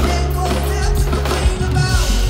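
Live pop-rock band playing through a concert PA, with heavy bass and drums, heard from within the audience.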